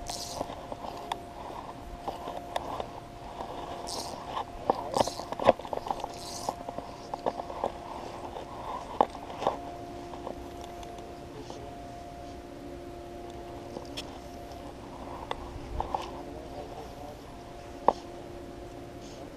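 Close handling noise from a fly rod and line: scattered short knocks, taps and rustles, thickest in the first few seconds and then sparser, over a steady low hum.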